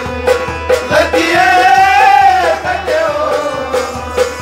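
Harmonium accompanying a male voice singing a folk song, with a hand drum striking a steady beat. About a second in, the singer holds one long note that rises and falls back before the drum strokes pick up again.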